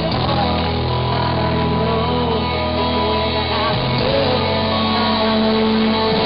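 Live rock band playing through a PA, with strummed acoustic guitar, a low bass line that changes note a little over halfway through, and a sung melody, heard from the crowd.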